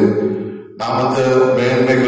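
A man's voice singing a slow, chant-like melody into a handheld microphone, with long held notes. It breaks off for a moment just under a second in, then picks up again, and a low steady tone carries on under the break.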